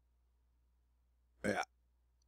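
Near silence with a faint steady low hum, broken about one and a half seconds in by a man saying a short "Yeah."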